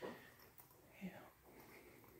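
Near silence in a quiet room, with a faint, indistinct voice, as if whispering.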